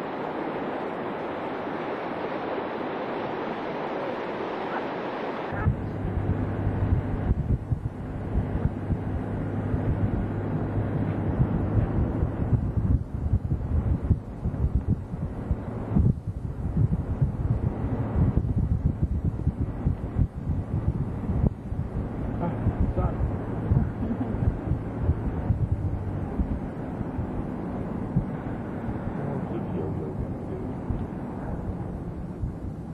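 Rushing water of a mountain stream pouring over rocks. About five seconds in it cuts to a steady low hum from a moving vehicle, with gusts of wind buffeting the microphone.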